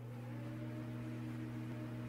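A steady low hum with a faint hiss over it, holding a few unchanging tones.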